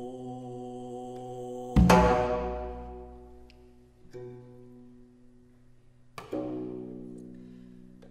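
Slow Korean court music for haegeum, gayageum and janggu. The haegeum holds a long bowed note. About two seconds in, a loud drum stroke and plucked strings sound together and ring down slowly. Another sustained note enters near the middle, and a second stroke with ringing strings comes about six seconds in.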